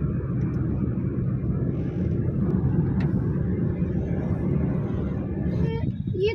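Steady low rumble of road and engine noise heard from inside a moving car.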